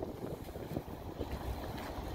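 Wind buffeting the microphone: an uneven, fluttering low rumble.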